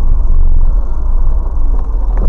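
A car's engine and tyres on a snowy road, heard from inside the cabin as a loud, steady low rumble.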